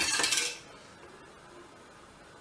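Metal wire whisk beating a thickening cream-and-cornflour sauce against the sides of a stainless steel pot: a fast metallic rattling that stops about half a second in.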